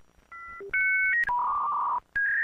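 A run of electronic beeps at changing pitches: a few short two-tone pairs like telephone keypad tones, then a longer, louder tone from about two-thirds of the way in that steps up slightly in pitch and holds to the end.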